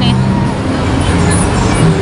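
Steady, loud city traffic noise with a road vehicle's engine running.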